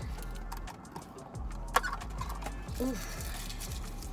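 Paper wrapper being torn and pulled off a drinking straw, with faint crinkling and one sharp click about halfway through, over a low steady hum inside a car cabin.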